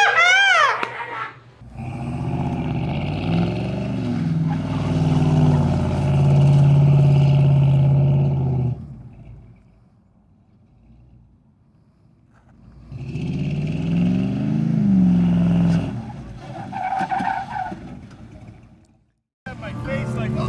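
Engine of an orange 1976 Chevrolet C10 squarebody pickup revving and pulling as the truck drives. The pitch climbs and holds for several seconds, then cuts off abruptly. After a quiet gap a second, shorter burst of engine rises and falls, then dies away.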